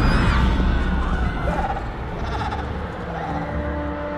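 A heavy low rumble dies away, and a few short, wavering pitched cries sound over it. Near the end, music with long held notes begins.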